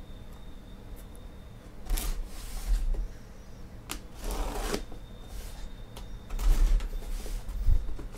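Utility knife slicing through packing tape along the seam of a cardboard case, in several short scraping strokes, with dull bumps of the box being handled and turned on the table.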